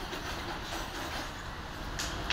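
Steady outdoor background noise: a low rumble with an even hiss and no distinct event.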